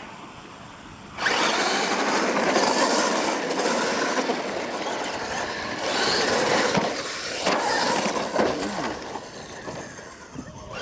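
Two radio-controlled monster trucks launching about a second in and racing across a dirt track: a loud, steady rush of motor and tyre-on-dirt noise that fades near the end.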